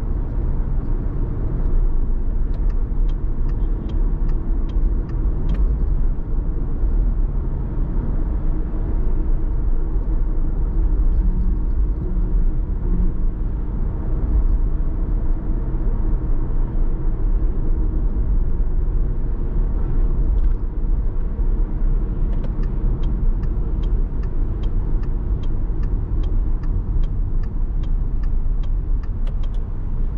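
A car driving on a city road, with steady low road and engine rumble. Twice, a run of evenly spaced ticks about two a second: the turn-signal indicator clicking.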